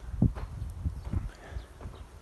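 Footsteps on dry, hard-packed orchard soil: a few irregular steps, the first about a quarter second in the loudest, over a low rumble of handling or wind on the phone's microphone.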